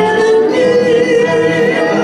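Live country music: women singing long held notes over acoustic guitar and a lap slide guitar.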